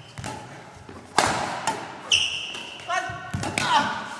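Badminton rally in a reverberant gym: two sharp racket strikes on the shuttlecock about a second in, half a second apart, then sneakers squeaking on the hall floor as the players move.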